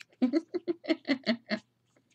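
A woman laughing: a quick run of about eight short 'ha's, ending about a second and a half in.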